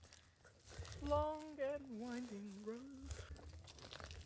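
A person's drawn-out vocal sound with no words, one long wavering note from about a second in until about three seconds, sliding slowly lower, with a few faint crackling clicks.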